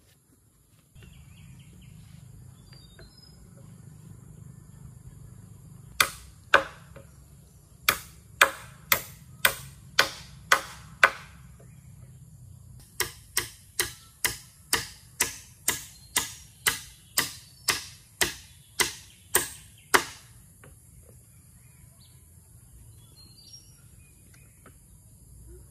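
Hammer blows on the wooden poles of a frame: a run of about nine sharp strikes, a short pause, then a longer run of about seventeen, roughly two a second, stopping about twenty seconds in.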